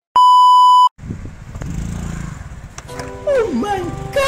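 A loud, steady, pure beep lasting under a second: the TV colour-bar test tone used as an editing gag. Near the end a man's voice exclaims with swooping pitch.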